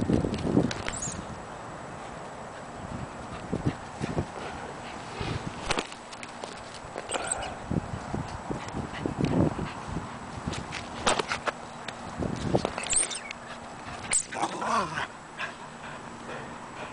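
A small terrier playing fetch with a rubber ball on grass: scattered scuffs and knocks of footfalls and handling, with a few short dog whines. The most noticeable whine comes near the end, as the dog grips the ball in a person's hand.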